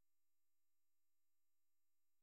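Near silence: a faint steady electrical hum.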